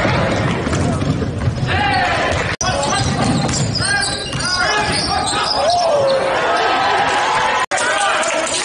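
Basketball game sound in a gym: a ball bouncing on the hardwood court with players' and spectators' voices around it. The sound drops out briefly twice, about two and a half seconds in and near the end, where one game clip cuts to the next.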